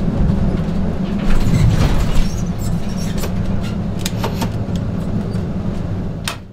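A220 full-flight simulator's touchdown and landing roll: a steady low engine hum, a heavy thump about a second and a half in as the wheels meet the runway, then scattered knocks and rattles as the aircraft rolls out. It is a rough, weaving landing.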